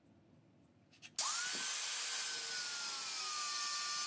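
Quiet for about a second, then an angle grinder's cut-off disc starts cutting into a steel file all at once. It makes a loud, steady grinding hiss with a high whine that sags a little in pitch as the disc bites into the metal.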